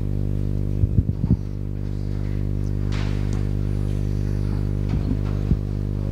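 Steady electrical mains hum with many overtones through the hall's microphone and PA. Over it come a few dull knocks about a second in and again near the end, from the microphone being handled as it is passed to the next presenter.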